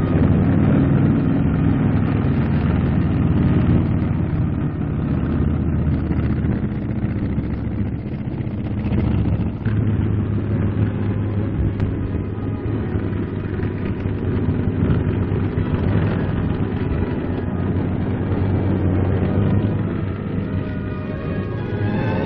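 Continuous low rumble of military truck engines running as a column moves, with music faintly mixed in.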